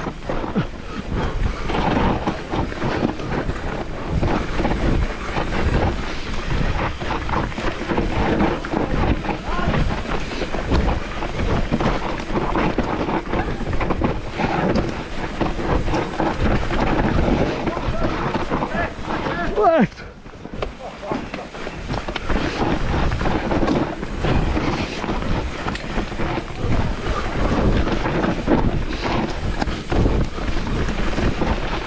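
Mountain bike descending a dirt forest singletrack: continuous tyre and trail noise with the bike rattling over the rough ground, and wind buffeting the camera microphone. Just before twenty seconds in, a brief rising squeal, then a short quieter moment before the riding noise picks up again.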